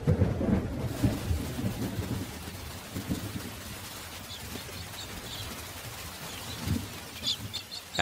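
Thunder rumbling, then a steady hiss of rain. Short high chirps of cockatiels sound over the rain from about three seconds in, with a few more near the end.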